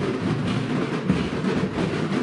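Percussion-heavy music with a steady, busy drumbeat.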